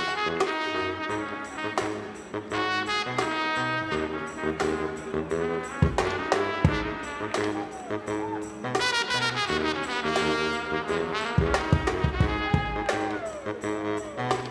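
Live brass-and-drums band playing: a trumpet lead with pitch glides over low baritone saxophone notes and a driving drum and percussion beat. A few heavy bass-drum hits fall past the middle.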